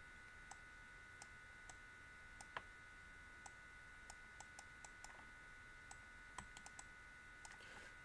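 Faint, irregular clicks from a computer input device while lines are drawn on screen, over a faint steady high-pitched whine.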